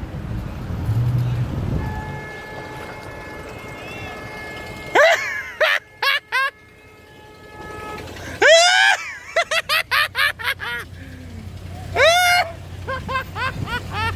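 A vehicle horn held steadily for about three seconds, then loud shouts from people in passing vehicles, with a quick run of short calls in the middle, over traffic noise.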